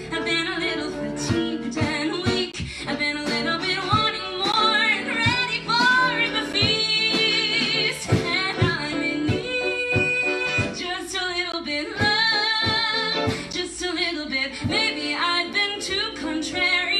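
A woman singing a musical-theatre song, holding long notes with vibrato, backed by a small live band with strummed guitar and drums.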